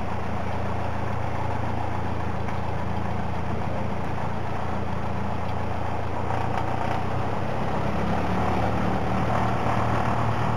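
Cessna 172SP's four-cylinder piston engine idling steadily, heard inside the cockpit, getting slightly louder near the end.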